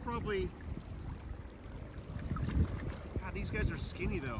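Wind buffeting the microphone in an uneven low rumble over the steady wash of a shallow river, with a short falling vocal sound right at the start and faint voices near the end.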